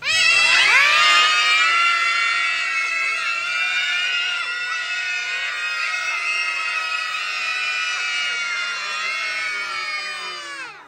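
A crowd of children screaming together as loudly as they can, all starting at once and held without a break, stopping suddenly just after the ten-second mark. It is a shouting contest in which the loudest gets a sweet.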